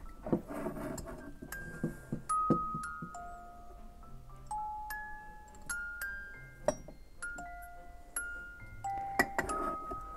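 Music box built into a ceramic teapot playing a slow tune, single clear metal notes ringing out one after another at changing pitches. A few light knocks come in between the notes.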